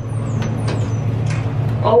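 Steady low hum of an elevator car in motion, with a few faint, high, falling squeaks in the first half second.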